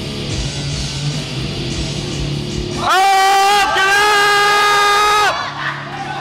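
Rock music playing in the background. About three seconds in, a loud, high-pitched yell of encouragement for a lift is held steady for about two seconds and drowns out the music.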